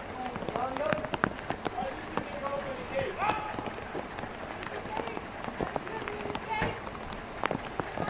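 Outdoor street sound as police walk a detained man into a building: footsteps of several people, faint scattered voices and many sharp clicks.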